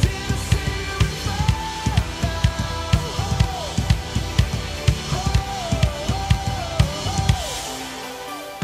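Acoustic drum kit playing a steady groove of kick drum, snare and cymbals along with a recorded worship song, whose gliding melody line runs underneath. The drum hits stop shortly before the end.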